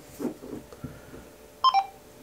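Kenwood TH-D74 handheld radio giving a short two-note electronic beep, the second note a little lower than the first, just after its APRS text message is sent.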